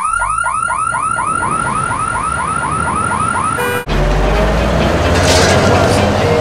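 Electronic car alarm siren sounding a fast run of rising-and-falling chirps, about four a second, over a steady high whine, cut off suddenly about four seconds in. A loud low rumble with a rush of noise follows.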